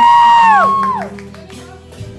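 A man sings long held notes through a microphone over a backing track. The notes end about a second in, leaving only the softer accompaniment.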